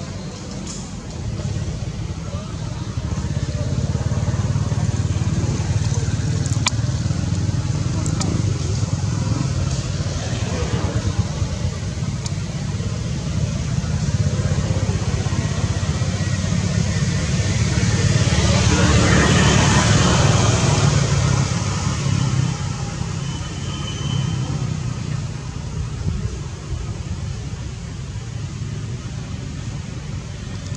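Road traffic: a steady low engine drone, swelling and fading as a vehicle passes about two-thirds of the way through.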